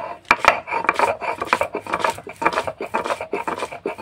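Stone roller (nora) being rubbed back and forth over a pitted stone grinding slab (sil), crushing cashew nuts into a paste. Rapid, gritty scraping strokes, about four a second.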